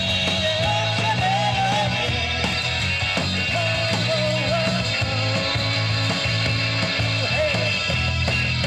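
Live rock band playing with electric guitars and drums, a full, steady sound and a wavering melodic line over a sustained low end.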